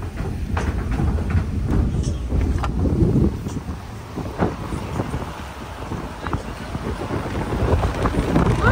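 Car in motion heard from inside: a steady low rumble of road and engine noise with wind buffeting the microphone, and scattered short knocks.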